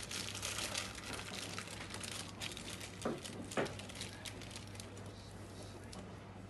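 Plastic wrap crinkling as the pastry sheets inside it are handled, fading after about two and a half seconds, with two light knocks in the middle. A steady low hum runs underneath.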